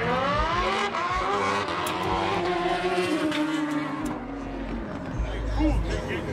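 A car engine revs up sharply, then its pitch falls slowly over the next few seconds as it winds down, with a low rumble near the end.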